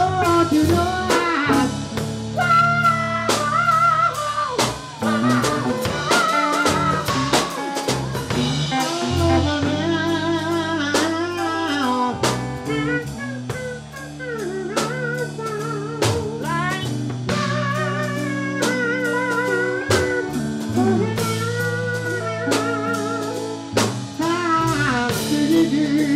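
Live blues band playing an instrumental stretch: a melodic lead line with wavering vibrato over sustained bass notes and a steady drum-kit beat.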